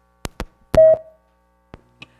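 Gooseneck table microphone being handled and switched back on: a few sharp clicks, then a brief loud feedback tone, the loudest sound, and one more click near the end. Two live microphones on the same table are interfering, the 'dueling microphones'.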